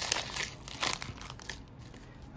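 Foil trading-card pack wrapper crinkling as hands pull it open and slide the cards out. There are a few sharp crackles in the first second, then it fades quieter near the end.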